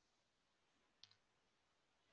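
Near silence, with a single faint click about a second in.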